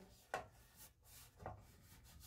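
Near silence, with two faint brief rubs, about a third of a second in and about a second and a half in: a hand brushing over the dryer's sheet-metal blower housing.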